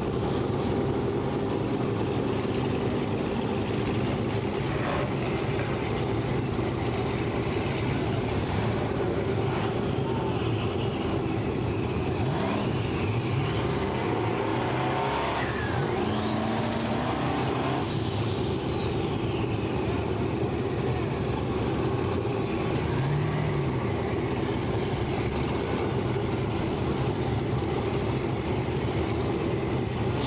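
Race car engines running in the staging lanes at a drag strip, a steady low drone, with a high whine that rises and falls about halfway through.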